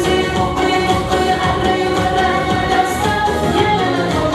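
A woman singing a Central Asian pop song live into a handheld microphone, over steady keyboard-led accompaniment.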